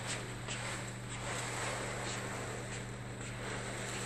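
A rug dragged across a laminate floor, a continuous scraping rustle, with a few faint clicks and a steady low hum underneath.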